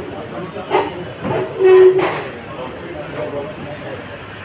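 Indistinct voices of people talking in the room over a steady background hiss, with one voice held on a longer sound near the middle.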